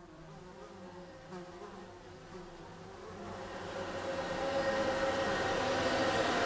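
A low buzzing drone that fades in from faint and grows steadily louder, the lead-in to the series' theme.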